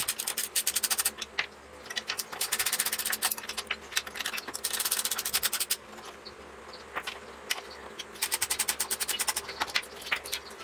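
Socket ratchet wrench clicking in quick runs as bolts are turned on a small petrol generator engine, in four bursts with short pauses between.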